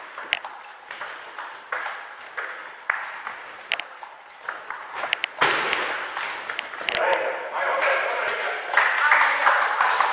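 Table tennis rally: the celluloid ball clicks sharply off bats and table every half second or so. About five and a half seconds in the rally ends and men's voices break out, shouting over the point.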